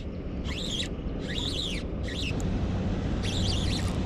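Birds calling in four short bursts of quick rising-and-falling chirps, over a steady low rumble.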